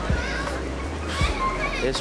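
Background music with a deep steady bass and soft low beats, under faint voices of people in the background.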